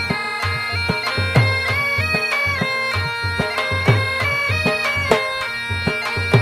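Bagpipes playing a melody over a steady drone, with a drum beating along about twice a second.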